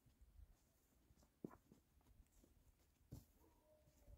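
Near silence, with a few faint soft clicks, one about one and a half seconds in and another just after three seconds.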